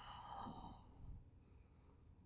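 Near silence: a man's faint breath fading out in the first moments, then room tone.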